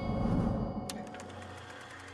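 Quiet soundtrack music holding a low sustained note, with a soft low rush near the start.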